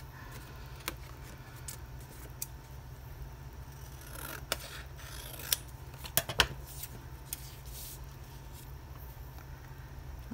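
Scissors cutting scrapbook paper: a series of snips and blade clicks, the loudest cluster about six seconds in, then paper being handled and laid down.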